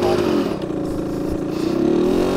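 Rieju MRT 50 two-stroke 50 cc engine running. Its revs sag in the first half second as the clutch is let out in first gear, then climb again near the end as the moped starts to roll.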